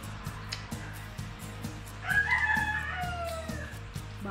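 A rooster crowing once, a single call of about a second and a half starting about two seconds in and dropping in pitch at its end, over background music with a steady beat.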